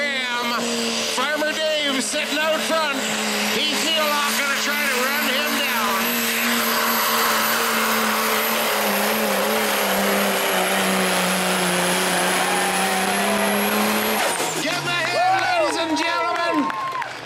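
Dodge Ram pro mod diesel pickup pulling the sled at full throttle: a loud, steady engine note with a high whistle above it. About fourteen seconds in, the pull ends and the engine and whistle drop away together.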